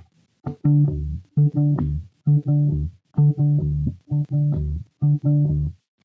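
Solo electric bass guitar plucking a short figure of octave D notes, the low D on the E string's tenth fret and the higher D on the D string's twelfth fret. The figure is played six times, about once a second, with a short silence after each.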